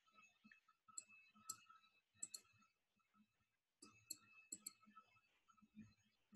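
Near silence with faint, irregular clicks of computer keyboard keys. There are a few single taps, then a short run of them about four seconds in.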